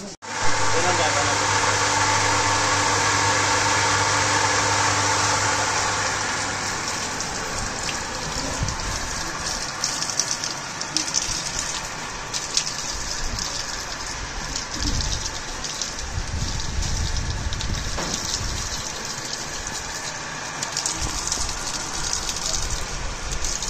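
Water gushing steadily from the taps of a newly opened well, with people's voices in the background. A steady low hum runs under it for about the first six seconds.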